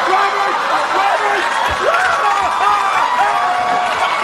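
Studio audience laughing and cheering, with many overlapping voices.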